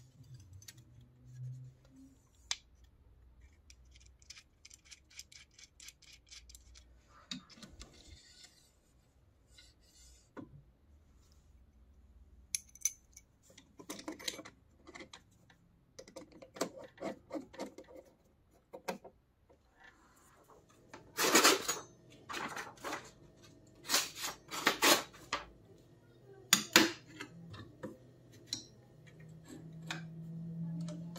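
Small metal parts and hand tools clicking and clinking as a homemade knife-sharpening jig of plywood and metal brackets is assembled, with a screwdriver turning screws into the metal fittings. There are runs of fine ticking in the first half, and louder clatter and knocks about twenty seconds in.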